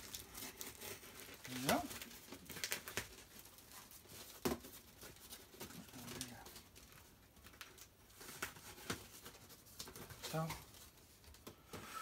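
Cardboard shipping box being carefully opened by hand: scattered quiet scrapes, crinkles and taps of tape and cardboard flaps, with a sharper click about four and a half seconds in.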